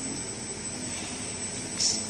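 Steady running noise of a Richpeace two-head, six-knife computerized perforation sewing machine, with a short, louder hiss near the end.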